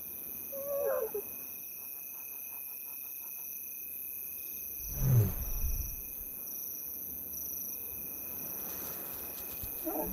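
Lionesses' soft contact calls, telling their cubs it is safe to come out. A short wavering higher call comes about a second in, and a louder low call about five seconds in, over the steady chirring of crickets.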